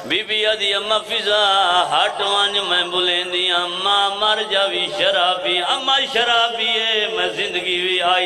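A man's voice chanting a melodic lament in long, wavering, drawn-out notes: the sung elegy style of a zakir's recitation at a Shia majlis.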